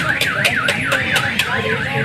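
A warbling alarm-like electronic tone, sweeping down and up about four to five times a second.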